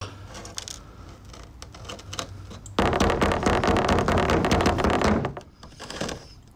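Scattered clicks and knocks of a rusty cast engine cylinder barrel and debris being handled on a workbench. About three seconds in, a loud rough noise starts and lasts about two seconds, then stops.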